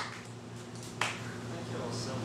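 One sharp hand clap about a second in, a last stray clap as sparse applause dies away, over a low steady hum.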